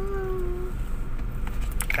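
Steady low rumble of a Honda automatic car's engine and tyres, heard from inside the cabin while it moves slowly. Over it, a voice holds one long drawn-out note that stops under a second in.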